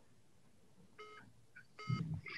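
Two short electronic beeps, the first about a second in and the second near the end, each a brief pitched tone with overtones.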